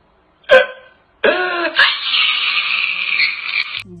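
A man crying out loud: a short sob about half a second in, then a long, raspy wail from a little after one second that cuts off abruptly just before the end.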